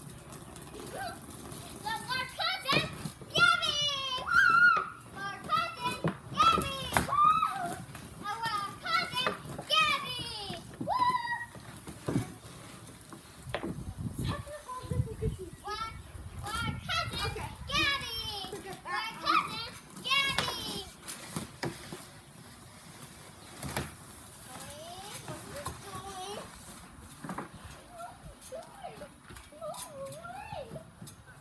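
Children's high-pitched voices shouting and squealing in play, busiest through the first two-thirds and thinning out near the end, with a few sharp knocks among them.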